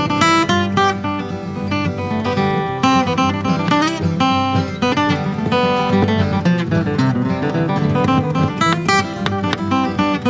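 Two acoustic guitars playing an instrumental tune: a flatpicked lead melody over strummed rhythm backing.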